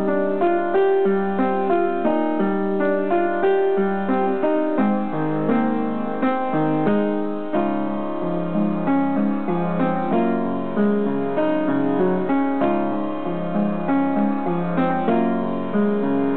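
Upright piano being played: a steady stream of notes, several a second, over lower held notes that change every second or so, all at an even loudness.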